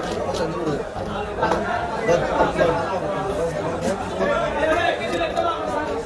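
Busy crowd chatter of many overlapping voices, with a few short sharp clicks and scrapes from a fish knife working a rohu on a wooden chopping block.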